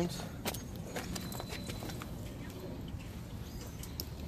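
A few light clicks and knocks from a steel bike cargo trailer being handled and wheeled into place behind a bicycle for hitching, the sharpest in the first second and a half, over steady outdoor background noise.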